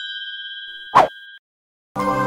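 Electronic notification-bell chime ringing in a few clear steady tones and fading away, with a short sharp hit about a second in. Soft ambient music starts right at the end.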